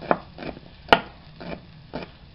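Kitchen knife slicing a shallot on a wooden cutting board: about five knocks of the blade on the board, unevenly spaced, the loudest about a second in.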